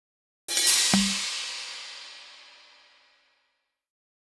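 Game sound effect of a cymbal-like crash about half a second in, with a low thump just after, ringing away over about three seconds. It marks the round ending without a win.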